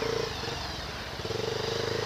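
Motorcycle engine running at low speed, its note holding steady for about a second twice with a short dip between.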